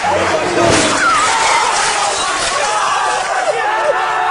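A single sharp crash about a second in as a minivan with a couch strapped to its front drives at speed into an old television set, amid several people yelling.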